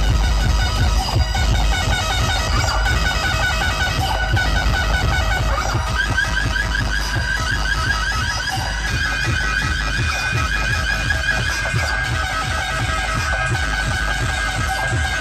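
Loud dance music played through a large DJ sound rig's speaker stacks. It has heavy bass and a fast, high, repeating melodic line over it.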